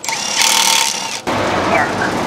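Pneumatic air drill running, drilling mounting holes through the truck's sheet-metal sleeper wall. It stops abruptly about a second and a quarter in.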